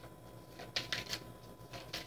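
A tarot deck being shuffled by hand: a quick run of three or four crisp card slaps about a second in, and another just before the end.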